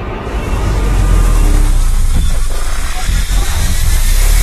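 Logo intro sound effect: a loud, dense rush of noise over a heavy bass rumble, swelling up over the first half-second and then holding steady.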